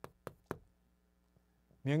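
Chalk tapping against a blackboard as characters are written: three sharp knocks about a quarter second apart in the first half second.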